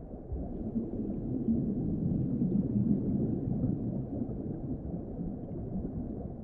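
Muffled underwater ambience: a steady low rumble with a gurgling texture and no clear highs, swelling in at the start.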